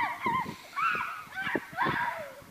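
Children's voices giving a string of short, high-pitched shrieks and squeals of laughter.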